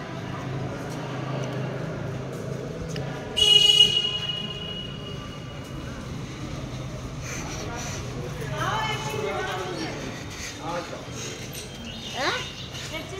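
Background voices of people talking, with one short, loud, high-pitched horn toot about three and a half seconds in.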